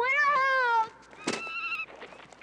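A boy's long yell that falls slightly in pitch, then about a second later a shorter, higher, wavering cry.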